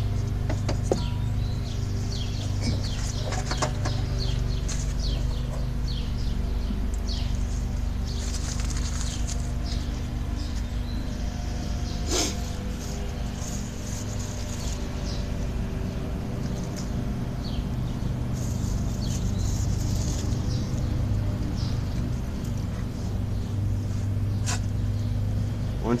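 Forge air blower running steadily at a low-to-medium setting, a low even hum, blowing air into a freshly lit coke fire. Faint high chirps and ticks come and go over it, with a single sharp click about twelve seconds in.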